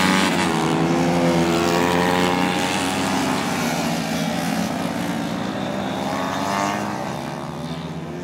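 Small 70 cc racing motorcycles passing at speed, engines at high revs. Their pitch drops as the first bikes go by, then rises and falls again as more come through, and the sound fades near the end.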